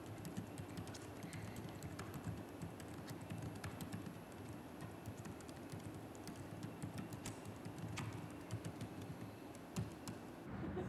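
Faint typing on a laptop keyboard: irregular, quick keystroke clicks with short pauses.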